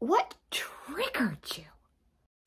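A woman's breathy vocalising: a short voiced syllable, then about a second of half-whispered, sighing breath with a voice sliding down in pitch, stopping about a second and a half in.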